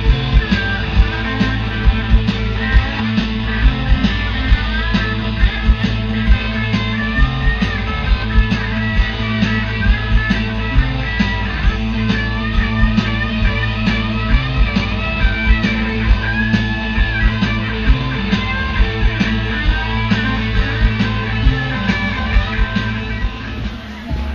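Live rock band playing loud through a festival PA: electric guitar lines over bass and a steady drum beat, recorded from within the crowd. The music drops away sharply just before the end.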